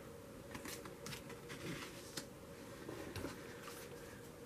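Tarot cards being handled and shuffled: faint, light card snaps and rustles at irregular intervals.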